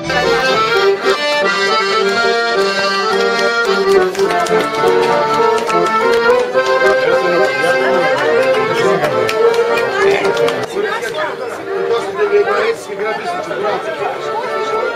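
Traditional folk music played live: a melody over a long held note, with crowd chatter underneath.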